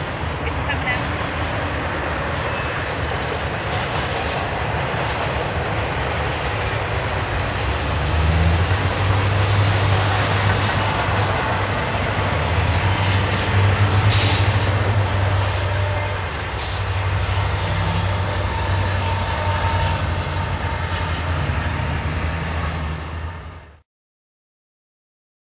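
Freight train rolling slowly past: a steady rumble of the locomotive engines and the wheels on the rails, with short high wheel squeals on the curve. There is a brief burst of air hiss a little past halfway, and a sharp click a few seconds after it.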